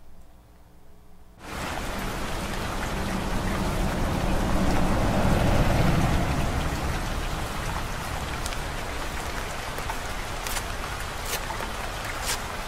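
Steady rain that cuts in suddenly about a second and a half in, grows louder toward the middle, then settles. A few crisp clicks come near the end.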